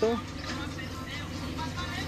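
A steady low hum like a motor vehicle's engine running, with faint distant voices.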